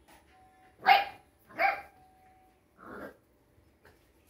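A dog barking: two sharp, loud barks about a second in, close together, then a softer third bark about three seconds in.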